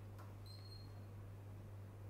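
Quiet room tone with a steady low hum, and one brief, faint, high-pitched squeak about half a second in.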